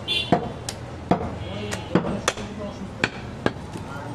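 Butcher's cleaver chopping goat meat on a wooden stump block: a run of sharp chops, roughly two a second at uneven intervals.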